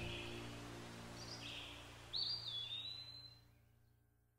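A soft music tail fading out under a faint outdoor ambience, with a bird's whistled call about two seconds in that dips and then holds its pitch for about a second. Everything stops abruptly shortly after.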